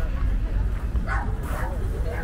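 Background voices of people talking over a steady low rumble, with two short, sharp calls about a second in and just past the middle.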